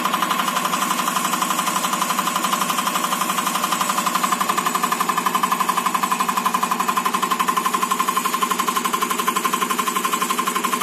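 EUS2000L diesel test bench running an electronic unit injector (EUI) through its cam drive: a loud, fast, evenly repeating mechanical clatter of the injector being pumped and fired over and over, with a steady whine.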